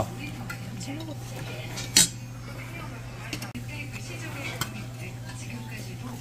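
Metal chopsticks and spoons clinking against stainless steel bowls during a meal, with one sharp clink about two seconds in and a few lighter ones later, over a steady low hum.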